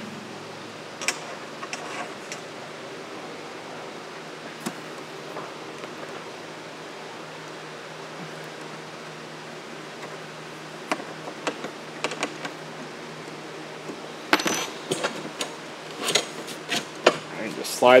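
Small metal parts clicking and tapping: aluminum extrusion connectors, screws and an Allen key handled on a wooden workbench. The clicks are scattered at first and come thicker in the last few seconds, over a steady low hiss.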